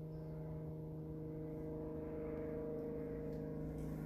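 A steady low hum with several even overtones, unchanging throughout: the sound of a motor or electrical equipment running during a silent pause.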